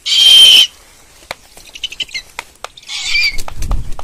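A large owl, held in the hand, gives a loud harsh hiss about half a second long, then a few faint sharp clicks and a second, softer raspy hiss about three seconds in. Near the end there is a low rustle of its wings being spread and flapped.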